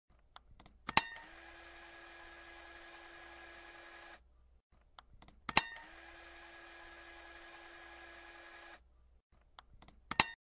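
Intro sound effect: a sharp mechanical click followed by about three seconds of steady whirring hiss with a low held tone, which then cuts off. The same click and whir comes twice, and a last click falls at the very end.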